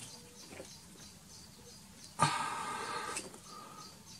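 Plastic rubbing on plastic as a slotted blue plastic sleeve is pushed onto a USB plug: about two seconds in, one scraping squeak that lasts about a second.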